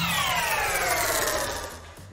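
Logo-animation sound effect: a synthesized tone with several overtones gliding steadily down in pitch and fading out near the end.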